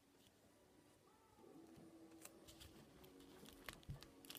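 Near silence, with a few faint clicks and rustles of paper and sellotape being handled.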